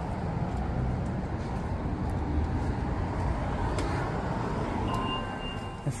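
Steady low rumble of street traffic. A faint, thin high tone comes in near the end.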